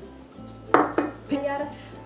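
Kitchen items knocking and clinking on a stone countertop: two sharp, ringing clinks close together about a second in, then a few lighter knocks.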